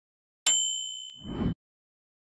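Notification-bell sound effect from an animated subscribe button: a bright bell-like ding about half a second in that rings on and fades, then a short low whoosh near the end.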